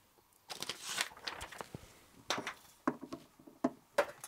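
A sheet of paper being pulled off and handled, rustling, followed by a string of short, light clicks and knocks.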